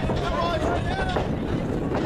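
Wind rumbling on the microphone, with faint voices of onlookers calling out in the background.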